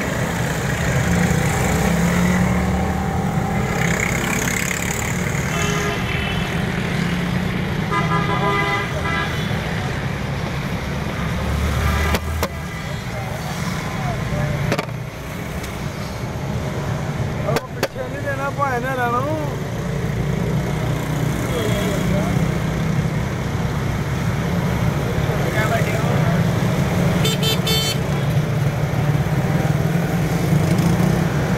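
Road traffic running steadily past, with vehicle horns sounding several times (about 6 s, 8 s and near the end), over a background of voices.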